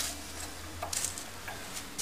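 A few faint clicks and ticks over a low steady hum.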